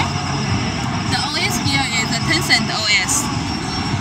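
Background voices chattering over the steady hum of a busy trade-show hall, with one voice clearest in the middle few seconds.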